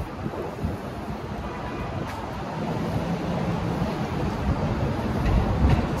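Steady city street noise of passing traffic, with wind on the microphone.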